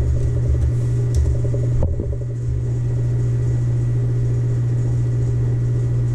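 Loud, steady low hum with no pause, a fault in the recording's audio, with a single click about two seconds in.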